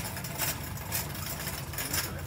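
Shopping cart rolling over a hard store floor: a steady low rattling rumble from its wheels, with light clicks and knocks every half second or so.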